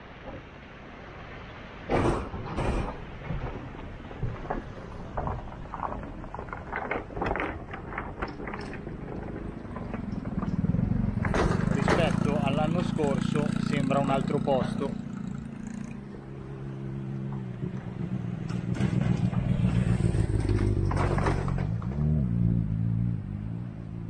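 Vehicles crossing a pontoon bridge of boats, with sharp clanks from the loose steel plates of its deck and an engine passing slowly twice, over the steady rush of river water against the moored barges.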